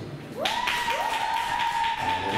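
Audience applause with whistling: from about half a second in, clapping starts and a whistle glides up twice and holds one high note.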